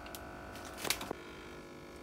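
Steady faint electrical hum with a single short click a little under a second in, with a couple of fainter ticks, typical of handling noise from the hand-held camera.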